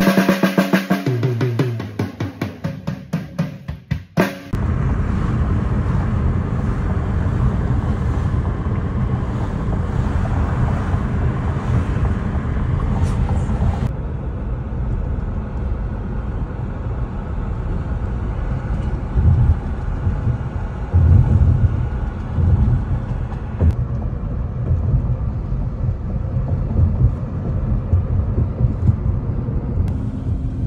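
A drum kit fill: quick strikes stepping down the toms from high to low pitch, for about four seconds. Then it cuts to steady road and engine rumble heard inside a moving car's cabin.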